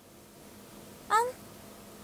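A woman's single short, hesitant "um" with rising pitch about a second in, otherwise quiet room tone.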